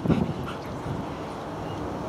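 A Belgian Malinois vocalising with short barks and whines, loudest just at the start as it jumps up at its handler.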